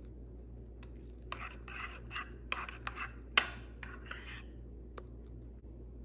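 Metal spoon stirring thick instant oatmeal in a ceramic bowl: soft scraping through the oats with sharp clinks of the spoon against the bowl, in a run of strokes through the middle few seconds and one last click near the end.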